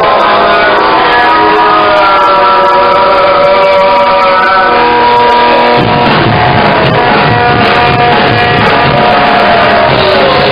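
Post-punk band playing live on a lo-fi bootleg recording: held, ringing guitar notes, with bass and drums coming in heavily about six seconds in.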